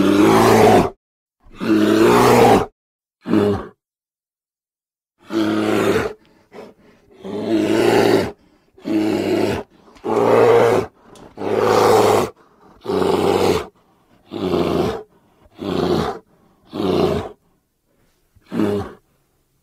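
Grizzly bear roaring: about a dozen short, loud roars of roughly a second each, one after another with brief gaps and a longer pause a few seconds in.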